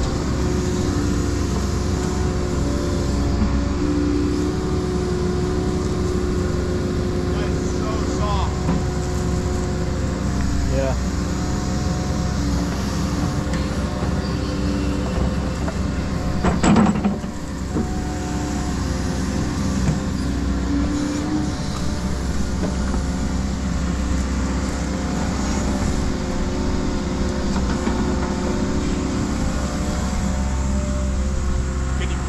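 Hyundai 140 tracked excavator running steadily under load while digging clay, its engine and hydraulics holding several steady tones that shift as the boom and bucket work. A single sharp knock about seventeen seconds in.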